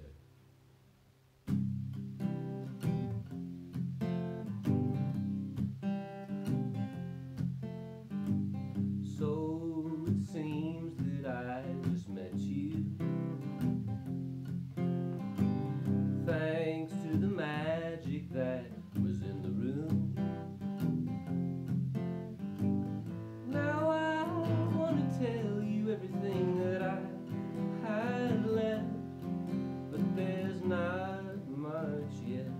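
Acoustic guitar starting up about a second and a half in, played with regular strokes, and a man's singing voice joining it from about nine seconds in.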